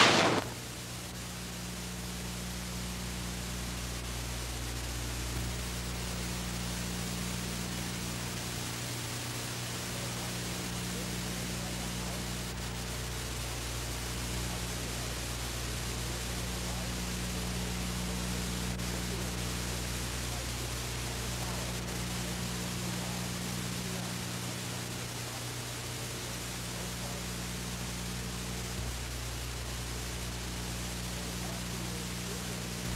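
Steady low electrical hum with its overtones under an even hiss, unchanging throughout: room tone with no distinct event.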